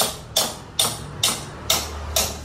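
A steady rhythm of sharp knocks, a little over two a second, each with a short ringing tail, over a low steady hum.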